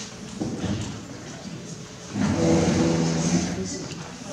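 Low murmur of people talking in a hall. About two seconds in, one voice rises over it and holds a single long, steady-pitched sound for nearly two seconds before fading.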